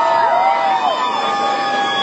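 Audience cheering: several voices rise into long, high held screams that overlap. Some drop away about a second in while others hold on.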